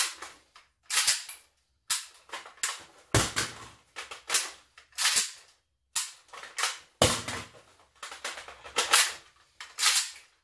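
Metal-on-metal clacks and rattles of a 5.45x39 AKS-74U-pattern carbine during rapid magazine changes: steel magazines knocked out of the magwell and rocked back in. A run of sharp snaps, the loudest about every one to two seconds, each followed by lighter rattling.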